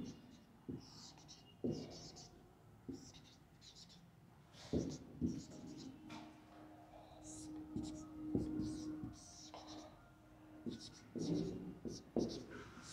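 Marker pen drawing on a whiteboard: short, scratchy, squeaky strokes in irregular bursts, with a few sharp taps of the tip against the board.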